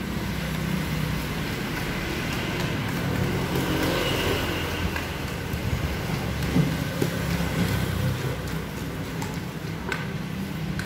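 Wooden pestle pounding in a clay mortar while making Thai papaya salad, heard as a few dull knocks about six to seven seconds in. They sit over a steady low rumble like passing road traffic.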